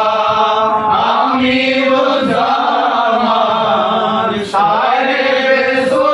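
A group of men singing a devotional chant together in long, held notes, with a short break for breath about four and a half seconds in.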